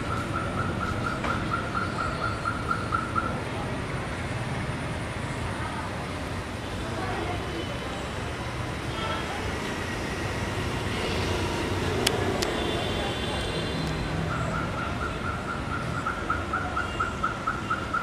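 Steady background noise with a rapid, evenly pulsing electronic-sounding beep for the first few seconds and again over the last few seconds, and one sharp click about twelve seconds in.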